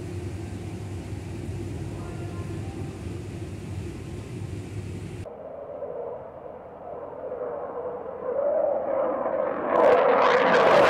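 Steady low rumble from a distant airport. After an abrupt cut, a delta-wing fighter jet's engine noise swells, growing loud near the end as the jet passes low overhead.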